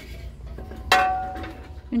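A single clink of ceramic or glassware knocked while being handled on a metal wire shelf, about a second in, ringing briefly with a few clear tones as it fades.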